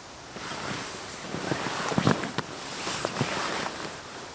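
Rustling and crinkling of a sleeping mat and nylon tent fabric as a person shifts and lies down flat inside a small one-man tent, with a few sharp crackles in the middle.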